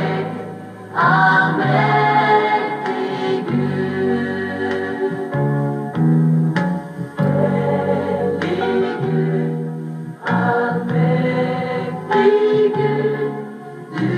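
A mixed vocal group sings a Norwegian worship song with grand piano accompaniment, in continuous phrases. It is heard played back through a television's speaker.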